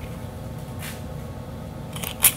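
Steady low room hum, with a faint brief rustle about a second in as a paper strip is shifted in the jaws of a Crop-A-Dile hole punch.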